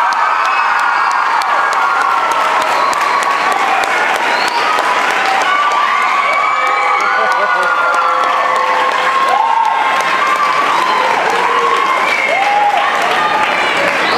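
Audience applauding and cheering, steady clapping with many high-pitched shouts and whoops over it.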